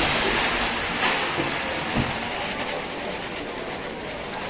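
Rice grains pouring from a sack into a huge steaming cooking cauldron, a hissing rush that is loudest at first and slowly fades, with a single knock about two seconds in.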